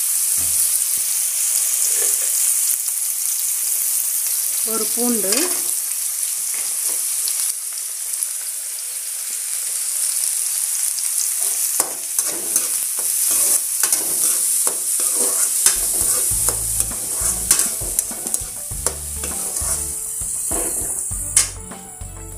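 Chopped onions, garlic and turmeric frying in hot oil in a metal kadai, with a steady sizzle. A perforated metal ladle stirring them scrapes and clicks against the pan, and the clicks come thick in the second half.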